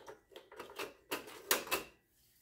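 Grey ribbon cable being pulled and handled inside an old PC's metal case: several short clicks, scrapes and rustles, the loudest in the second half.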